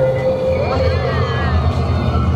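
A steady low droning rumble with a voice that rises and falls in pitch about a second in. A held tone under it ends about half a second in.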